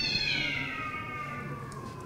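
One long animal call that rises briefly and then glides slowly down in pitch, fading out near the end.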